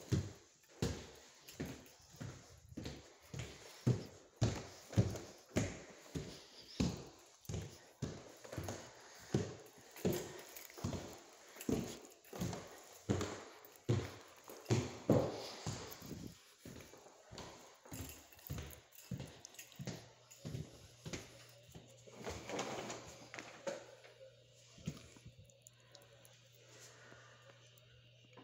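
Footsteps on hard indoor floors, a steady walking pace of about two steps a second; after about twenty seconds the steps slow and grow softer, and a faint low steady hum comes in.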